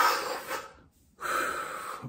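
A man's breath through the lips: a sharp drawn-in breath, then after a brief silence a long breath blown out through pursed lips, as if drawing on and exhaling a cigarette.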